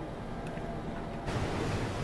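A ship under way at sea: a low steady rumble, then from about a second in a louder rushing of water as the hull pushes through the waves and throws up its bow wave.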